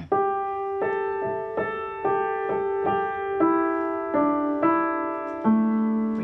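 Upright piano played with a felt strip dropped between the hammers and the strings, giving a soft, muted, velvety tone. A slow line of single notes and chords, a new one struck under every second and each left ringing into the next.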